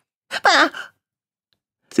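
A woman's short, breathy, sigh-like gasp with falling pitch, about half a second long, voicing a parrot that is gasping for air.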